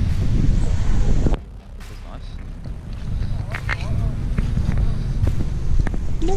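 Wind buffeting a handheld camera's microphone outdoors as a heavy, uneven low rumble. It drops off suddenly about a second in, then slowly builds again, with faint voices of people chatting in the background.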